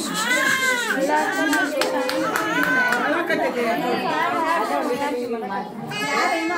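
Several women talking and singing over one another in high, overlapping voices. This is the crowd chatter and cradle-song singing of a group gathered around a baby's cradle.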